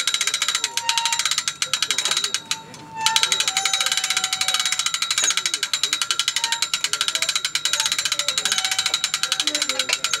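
Hand-cranked ratchet winch clicking rapidly and evenly as it hoists a large lake sturgeon on its hook, with a short break about two and a half seconds in.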